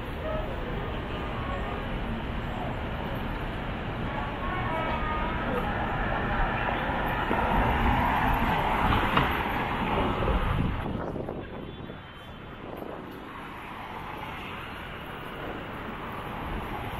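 City street ambience: traffic rumble and passing vehicles with voices of passersby. It swells to its loudest as a vehicle goes by about eight to ten seconds in, then drops suddenly to a quieter hum.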